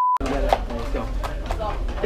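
A short beep at one steady pitch, with the room sound cut out around it, like a bleep censoring a word. Then a locker room full of hockey players talking over one another, with a few sharp knocks.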